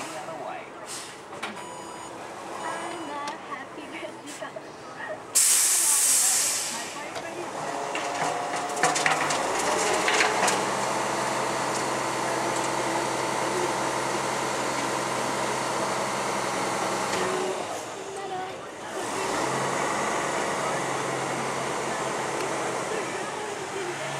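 A MacDonald Johnston MNL front-loader garbage truck on a Mitsubishi FUSO chassis: a sudden loud hiss of air from its air brakes about five seconds in, then its diesel engine running steadily with raised revs, dipping briefly near the end.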